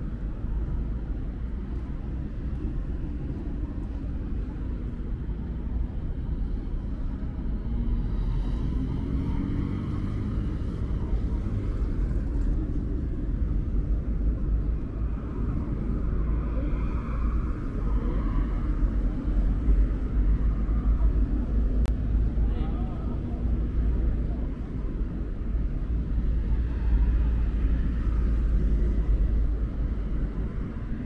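Busy city intersection: a steady low rumble of passing cars and buses, with passers-by talking faintly in the background.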